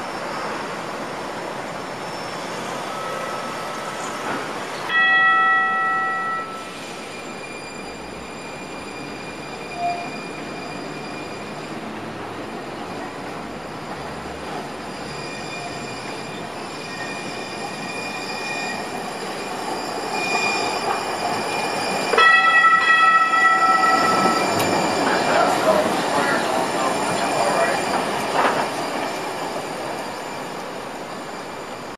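A Siemens S70 light rail car of The Tide sounds its horn twice: a short blast about five seconds in and a longer one about 22 seconds in. Near the end it runs past louder, its steel wheels squealing on the curved street track.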